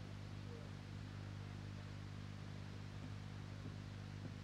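Near silence: faint room tone with a steady low electrical hum from the sound system.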